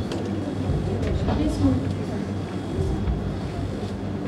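Faint, indistinct voices in a room over a steady low hum.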